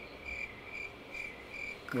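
A cricket chirping steadily: short, high, evenly spaced chirps, about two a second.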